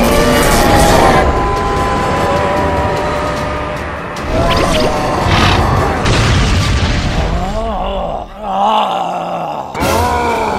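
Cartoon fight sound effects over background music: booming hits and a ground-smashing blast in the middle, then a wavering voice-like cry near the end.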